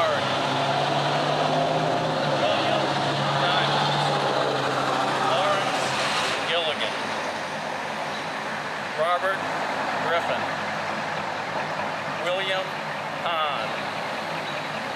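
A motor vehicle's engine running nearby with a steady low hum that drops away about six seconds in, over a constant outdoor background noise.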